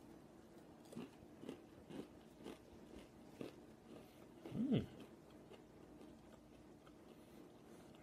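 Close-up crunching and chewing of a mouthful of nut-and-seed keto granola, a string of faint crisp crunches about every half second. A short voiced hum from the eater comes near the middle.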